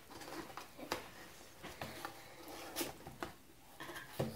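Faint scratching and clicking of fingers working at the flap of a cardboard box as it is opened, a few short ticks scattered through.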